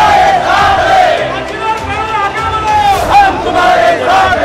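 Protest crowd shouting slogans, loud, in long drawn-out calls.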